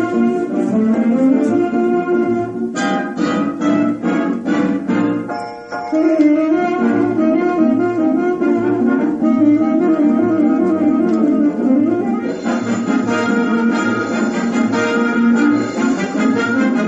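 Instrumental band music, a wind-instrument melody over a steady pulsing bass; the music briefly dips about five and a half seconds in, then carries on.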